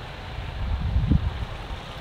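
Wind rumbling on the microphone, a low noise that swells about a second in.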